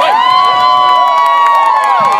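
A crowd shouting and cheering: many overlapping long, drawn-out shouts that rise, hold and fall, with scattered sharp clicks among them.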